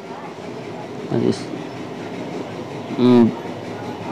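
A man makes two short voiced sounds, a faint one about a second in and a louder one about three seconds in, over a steady background rumble.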